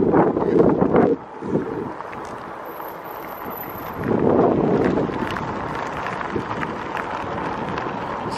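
Wind buffeting the microphone of a camera carried on a moving electric bike, in strong gusts for the first second and again about four seconds in, with a quieter rushing of air and road noise between.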